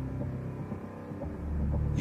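Song intro music: low sustained drone tones that thin out about halfway through, then swell back up in the bass.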